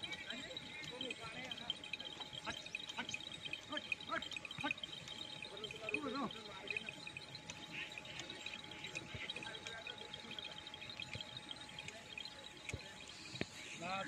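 Outdoor rural ambience of small birds chirping continuously, over a faint steady hum. One short rising call is heard about six seconds in.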